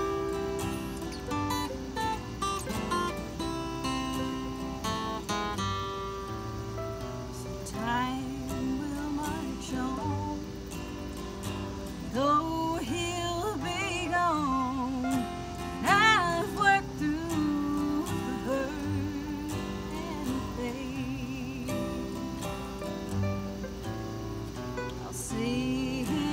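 Two acoustic guitars playing together in an instrumental passage between verses. In the middle, a melody line that slides in pitch and wavers rises above the guitars.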